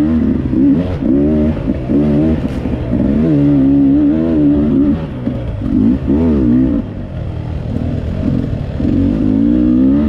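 Dirt bike engine under way, revving up and dropping back again and again as the throttle is worked, its pitch rising and falling every second or so, with brief drops off the throttle near the middle.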